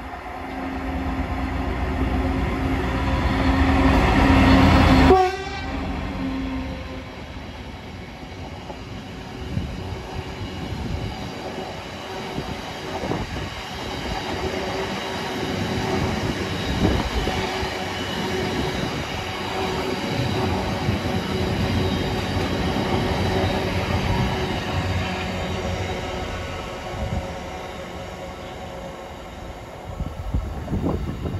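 GB Railfreight Class 66 diesel locomotive passing close by, its EMD two-stroke engine growing louder on approach, then falling in pitch and level suddenly as it goes past about five seconds in. After it, a long rake of cement tank wagons rolls by with a steady rumble and wheel clatter.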